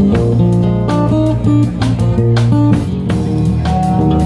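Live band playing an instrumental passage: acoustic guitar with electric bass guitar and a drum kit, the bass line holding steady low notes under the guitar and regular drum and cymbal strokes.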